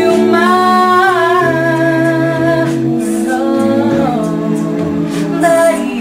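Mixed-voice a cappella group singing in close harmony, holding long chords with a low bass part beneath an upper melody line that bends between notes.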